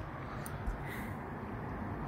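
Steady low background noise with no distinct source, and a faint click about half a second in.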